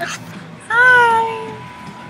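A young woman's high-pitched excited squeal: one held cry of almost a second that rises slightly, then falls away.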